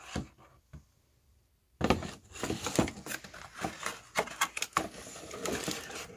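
Bottles and plastic-wrapped packaging being handled in a cardboard box. After near-quiet, a busy run of knocks, clicks and rustles starts about two seconds in.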